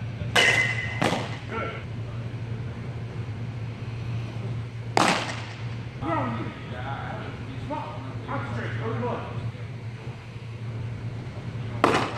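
Pitched baseballs smacking into a catcher's leather mitt: a sharp pop about half a second in with a smaller knock just after, another pop about five seconds in, and a last one near the end, over a steady low hum.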